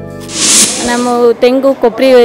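A short hiss lasting about half a second, followed by a woman's voice speaking.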